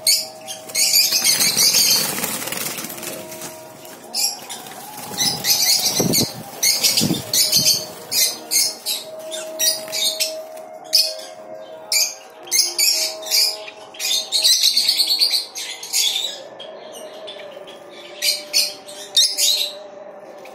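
A colony of caged lovebirds calling, many short shrill chirps in quick bursts one after another.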